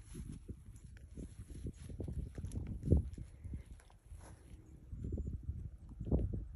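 Red smooth-coated puppy chewing and tugging a fabric rope toy on grass: irregular soft thumps and rustles, the loudest about three seconds in.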